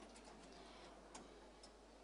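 Near silence with a few faint, brief clicks.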